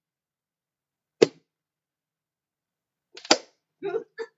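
Sharp taps and knocks of toys being handled on a table: one about a second in, and a second, louder cluster a little after three seconds.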